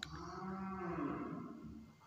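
A cow mooing once: one long, faint call lasting most of two seconds, its pitch rising slightly and falling back.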